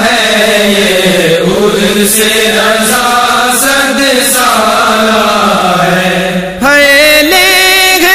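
Voices humming a sustained, slowly gliding vocal drone without words, of the kind used as backing in a naat or manqabat recitation. About six and a half seconds in, a solo voice comes in louder with a wavering, ornamented sung line.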